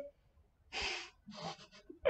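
A man's breathy gasps, two short exhales about a second in and half a second later.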